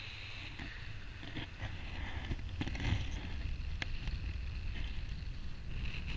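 Wind rushing over the microphone of a hand-held camera in paraglider flight: a steady low rumble with a hiss. Rustling and a sharp click near the middle as the gloved hand turns the camera.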